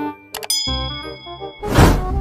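Subscribe-button animation sound effects over background music: a sharp click and a bright bell ding about half a second in, then a loud whoosh near the end.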